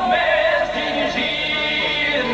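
Men singing an Albanian folk song together with long-necked plucked lutes, the voices holding long bending notes.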